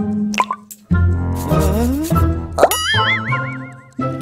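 Cartoon sound effects over children's background music: a single water-drop plop under a second in, then, in the last second or so, a rising glide into a wavering, boing-like tone, a cartoon 'bright idea' effect.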